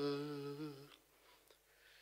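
A man's voice holding a hummed note at the end of a sung line, fading out within the first second, then about a second of silence.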